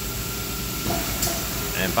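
Compressed air hissing steadily out of a pneumatic solenoid valve on a pouch packaging machine, over the machine's low hum. The air escapes from a hole in the valve and keeps leaking even when its button on the panel is pressed: a leaking, faulty solenoid valve.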